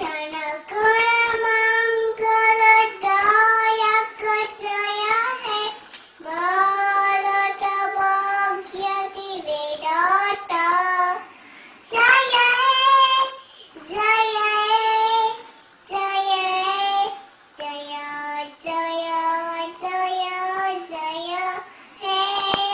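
A toddler singing a song in a high voice, holding long notes in short phrases separated by brief pauses.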